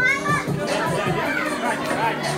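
Young children's high, excited voices and squeals, with dance music and its steady beat underneath.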